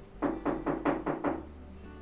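A quick run of six knocks, about five a second, over the background music of the film score.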